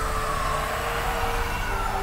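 Horror-film soundtrack: a whooshing tone that swells and then slowly falls in pitch, over a steady droning score.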